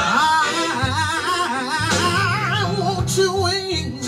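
Live gospel music: a male singer sings a melismatic line with heavy vibrato over band accompaniment.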